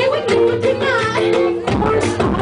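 Live band music: a woman singing into a microphone over held instrumental notes and a steady drum beat.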